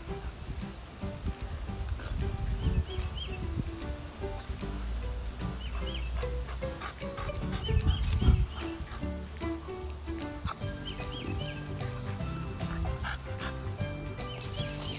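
Upbeat pop background music with a stepping melody, over low rumbles and thumps in the first half and a faint hiss in the second half.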